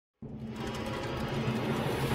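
Channel intro music starting as a swell: a noisy, airy build over low steady tones that comes in just after the start and grows steadily louder.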